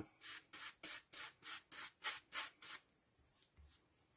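Flat paintbrush stroking grey acrylic paint onto an XPS foam block: a quick run of faint bristle swishes, about four a second, that stops about three seconds in.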